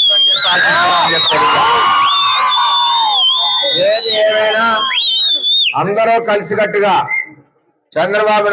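Loud, shrill whistling in three long whistles from a rally crowd, over crowd shouting and cheering. The whistles are followed by a short burst of voices, and the sound cuts off suddenly near the end.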